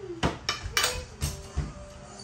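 Forks and spoons clinking against ceramic plates and bowls during a meal: about five sharp clinks, some ringing briefly.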